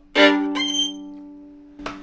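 A violin chord played with a sharp attack, ringing and fading away over about a second and a half.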